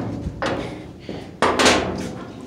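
A few knocks and scuffs of someone moving about inside a metal shed, with a louder scrape or rustle about one and a half seconds in.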